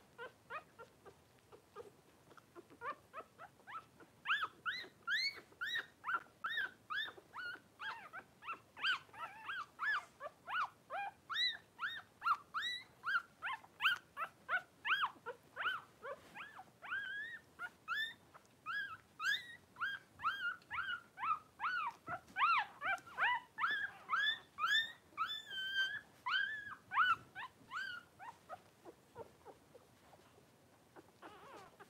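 Newborn Cavalier King Charles spaniel puppies crying: a long run of short high-pitched squeaks, two or three a second, starting about four seconds in and dying away near the end.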